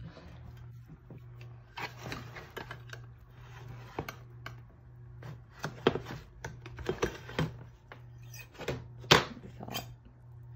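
A table knife scraping and clicking against a metal baking pan as baked kibbeh is loosened from it and moved into a glass baking dish. There are several sharp knocks, the loudest about nine seconds in, over a low steady hum.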